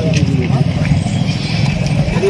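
Steady low rumble of road traffic, with a few words from men's voices over it.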